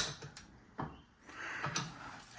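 A sharp metallic click from the bench vise as its handle is tightened on a fence rail, followed by a few faint taps and rustles of handling.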